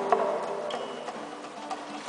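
Acoustic guitar playing a few soft, sparse plucked notes that ring and die away, the music fading to a quiet lull.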